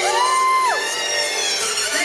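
Music played for a breakdance battle, with a high melodic line that slides up at the start, holds, and drops away just under a second in. A crowd is audible underneath.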